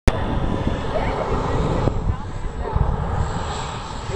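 Boeing turbine engine of a jet-powered portable toilet running, heard at a distance as a steady low rumble that swells and fades a little.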